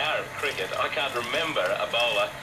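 A man's voice from an AM shortwave broadcast, heard through a Collins R-390A receiver and CV157 single sideband adapter whose AFC is holding the carrier locked while the receiver is retuned. A steady high tone runs under the voice.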